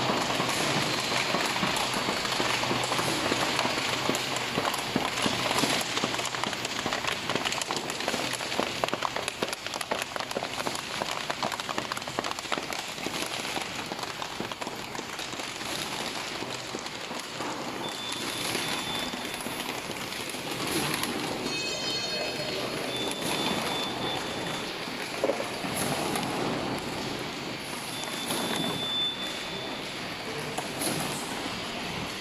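Paper-PE laminated centre-seal bag-making machine running: a steady dense mechanical clatter, with a few short high beeps in the second half.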